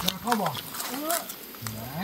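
Speech only: a person talking in short phrases, with no other clear sound.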